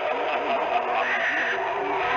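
Eerie Halloween sound effects: a wavering, wail-like voice over a dense, steady background.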